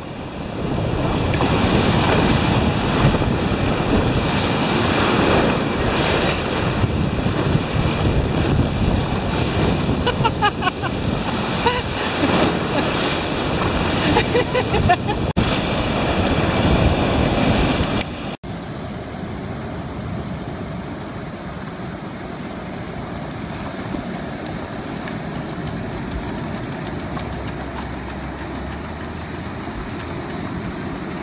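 Ocean surf breaking and washing in, with wind buffeting the microphone. About 18 seconds in, the sound cuts abruptly to a quieter, duller steady rush of surf.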